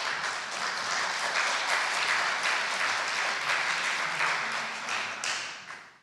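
Audience applause in a hall, a steady patter of many hands clapping that fades away near the end.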